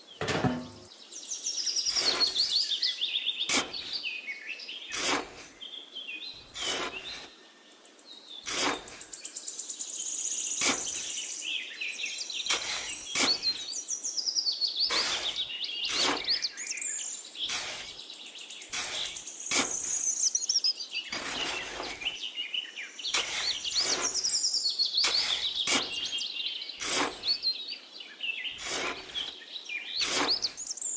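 Small songbirds chirping and singing throughout, with short scraping strokes about every second or so as a small hand trowel cuts into and scoops sand.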